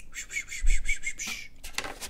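A high squeaky rub with a fast, wavering pitch, lasting about a second and a half, with a dull low thud partway through; a few short scrapes follow near the end.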